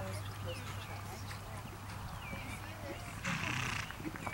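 Faint, distant voices over a steady low hum, with a brief hiss about three seconds in.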